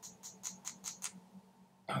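Quick light taps on a doming punch, about seven in the first second, then stopping: the punch is peening a short silver wire over into a hole in copper sheet to set a raised dot inlay.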